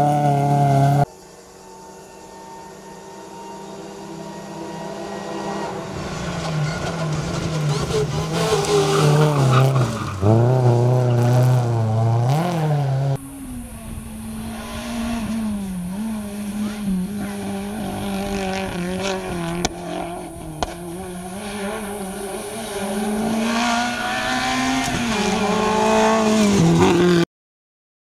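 Rally cars' engines racing uphill, one car after another, driven hard. Each engine's pitch climbs through the gears and drops at every shift or lift. The sound stops abruptly near the end.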